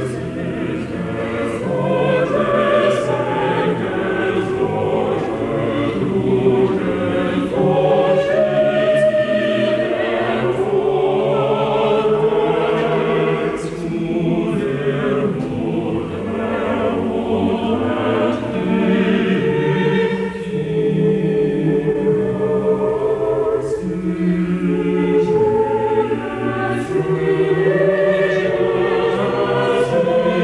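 A choir singing, holding chords that shift from one to the next every second or two.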